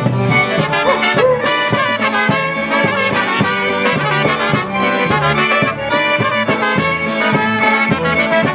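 Live brass polka band playing an instrumental break, with trumpets carrying the melody over a steady bass accompaniment.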